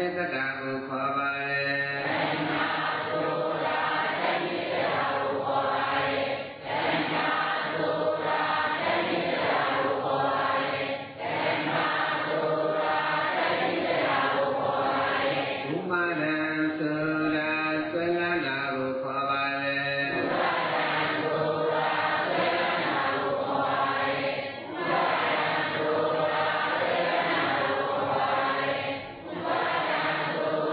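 Buddhist chanting, voices reciting in a steady sung tone, with long held notes near the start and again about halfway through.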